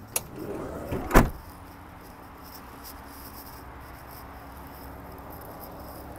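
Minivan sliding side door rolling shut and latching: a short rumble ending in one loud thump about a second in, then steady low background noise.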